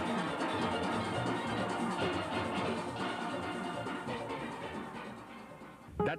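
Steel band playing a calypso tune on many steel pans; the music fades down near the end.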